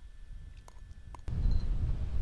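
Wind rumbling on the microphone, with a couple of faint clicks; about a second in the wind buffeting gets much louder and heavier.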